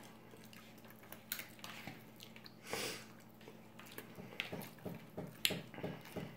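A person eating chicken pot pie: soft chewing with small clicks and taps of a plastic fork scooping food on a paper plate.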